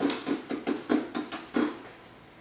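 Footsteps on a hard floor: a quick run of soft steps, about four a second, that stops near the end.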